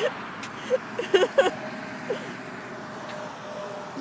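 Steady road-traffic noise with a vehicle going by, its faint hum held for a couple of seconds in the middle. A few short vocal sounds come a little after a second in.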